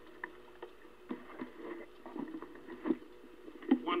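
A microphone being handled and adjusted: a handful of irregular bumps and clicks, the loudest just before the end, over the steady hiss and hum of a 1948 wire recording with a dull, cut-off top.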